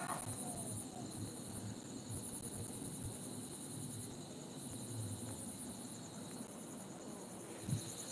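Insects trilling faintly: high-pitched pulsing trills in runs of about a second, separated by short gaps, over a steady thin high hum.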